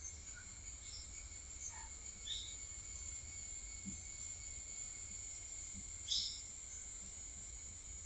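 Steady, high-pitched chorus of insects such as crickets, with a few short chirps about two and six seconds in.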